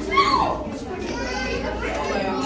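Many children chattering and calling out over one another. About a quarter second in, one child gives a loud, high shout that falls in pitch.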